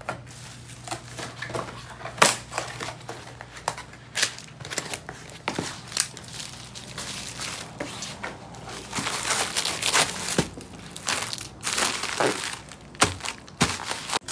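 Plastic bubble mailer being squeezed, bent and crumpled by hand, crinkling with many short, sharp crackles that come thickest in the second half.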